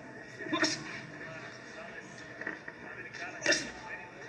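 Faint arena sound of an amateur boxing bout heard through a television's speaker, with two short sharp sounds, about half a second in and near the end, the second the louder.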